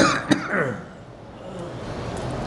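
A man clearing his throat with short coughs into a close microphone: two or three sharp bursts within the first second.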